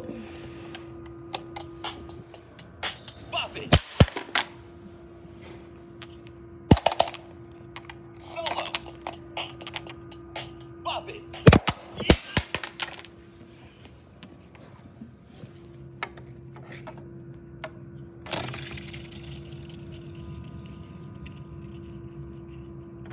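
A plastic Bop It toy being knocked about on a hard floor: sharp clattering knocks in short clusters about 4, 7 and 12 seconds in, over a steady low hum.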